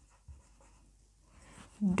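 Felt-tip marker writing on a whiteboard: faint short strokes and taps of the pen tip on the board. A spoken word begins near the end.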